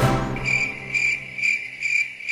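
Cricket-chirp sound effect: steady, high chirps about twice a second, the comedy cue for an awkward silence.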